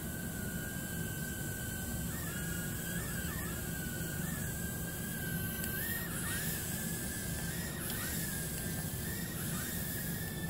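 JJRC H36 micro drone hovering: its four tiny propeller motors give a steady high whine. The pitch dips briefly and springs back again and again as the throttle is corrected.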